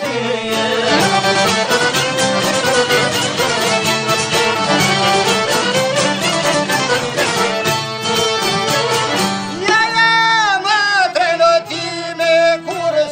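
Albanian folk song: a busy instrumental passage over a steady beat, with a male voice coming back in with a long held, wavering note about ten seconds in.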